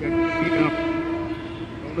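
One long horn blast at a single steady pitch, lasting nearly two seconds and stopping abruptly.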